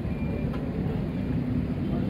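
Steady low background rumble with a faint indistinct murmur and no clear single source.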